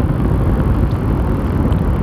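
Suzuki Gixxer motorcycle being ridden down a street: a steady, loud low rumble of engine, road and wind noise picked up by the rider's on-bike camera microphone.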